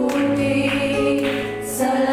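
Worship song sung by women's voices into microphones, with sustained notes, backed by a live band with keyboard; the low bass note drops out at the start.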